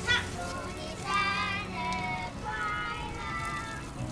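Young children singing together in high voices, in short phrases with a couple of held notes.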